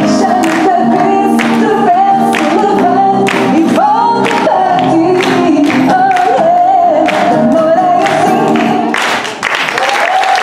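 A woman sings a song with acoustic guitar accompaniment, holding long notes, while the audience claps along in time at about two claps a second.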